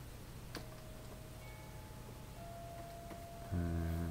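Quiet room with a steady low electrical hum, a single light click about half a second in and a faint thin steady tone after it. Near the end a man's voice starts.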